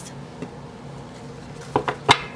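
A deck of oracle cards being picked up and handled, with a few soft clicks near the end.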